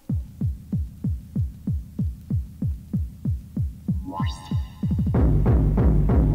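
Gabber hardcore techno: a lone kick drum, each hit dropping in pitch, pounds about three times a second. About four seconds in a rising synth sweep enters and the kicks roll faster, and just after five seconds the full, dense track drops in, louder.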